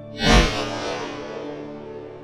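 A single shotgun shot about a third of a second in, its report fading away over the next second and a half. Harpsichord-like background music plays underneath.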